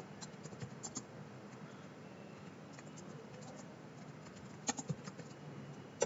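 Faint typing on a computer keyboard: scattered soft keystrokes over a low hiss, with a couple of sharper key clicks near the end.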